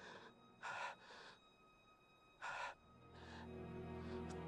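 A wounded man's laboured gasps for breath, the acted dying breaths of a fatally shot soldier: two short rasping gasps close together about a second in and a third near the middle. Soft, sustained film score lies faintly underneath.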